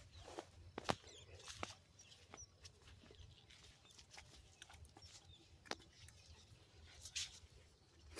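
Faint, scattered clicks and rustles of a fishing net's cord being handled, a few sharper clicks standing out.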